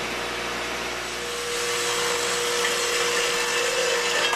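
Horizontal metal-cutting bandsaw running and cutting a bevel through iron handrail bar: a steady machine noise, with a steady whine joining about a second in as the cut goes on.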